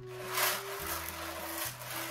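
Gravel poured from a bag into a shallow tray, a gritty rush that is strongest about half a second in, over background music with sustained notes.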